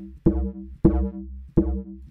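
FM pluck bass patch in the Serum software synth playing short notes about 0.6 s apart, each with a sharp attack and a quick decay over a deep low end. The patch is oscillator A frequency-modulated by a copy of itself an octave up, with an envelope shaping the FM amount and the filter, and it runs through Serum's tube distortion.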